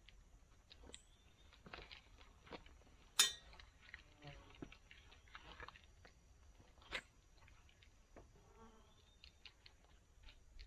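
Faint, scattered clicks and knocks of tree-climbing gear as a climber works up climbing sticks strapped to a pine trunk: boots and metal sticks knocking, harness hardware clinking. There is a sharp click about three seconds in and another about seven seconds in.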